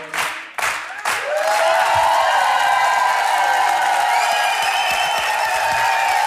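Studio audience clapping in time for about the first second as the last sung note fades, then breaking into continuous applause and cheering. Long held music tones swell under the applause, with a higher tone joining partway through.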